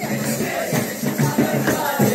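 A group of men singing a Christmas carol together, with a jingling hand-percussion instrument such as a tambourine keeping the beat and some hand clapping.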